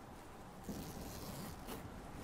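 A bag being opened and rummaged through, with fabric rustling as a jacket is pulled out, starting about half a second in, over a faint steady bed of rain.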